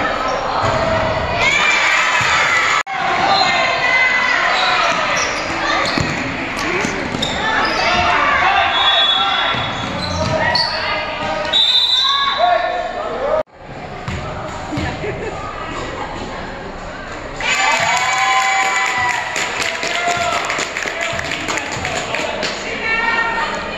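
A basketball being dribbled and bouncing on a wooden gym floor, with players' and spectators' voices calling out over it.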